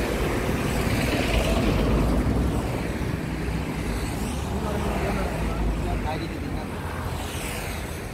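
Road traffic passing close by on a highway: a steady low rumble with vehicles going by one after another, each swelling and fading as it passes, about 4 seconds in and again near the end.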